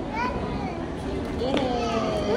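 A young child's high voice: two short vocalizations about a second apart, over steady background noise.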